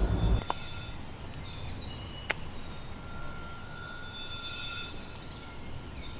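A low rumble that cuts off sharply half a second in, then quiet outdoor woodland ambience with faint, thin, high steady whistles coming and going, and a single sharp click a little after two seconds.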